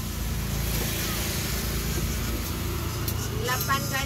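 A motor vehicle engine running steadily, a low hum under the stall's surroundings, with a voice speaking near the end.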